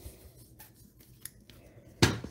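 A few faint, light clicks as small plastic craft-paint bottles are handled and picked up.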